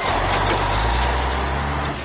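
Semi-trailer truck driving past close by: a steady low diesel engine rumble under a wash of road noise.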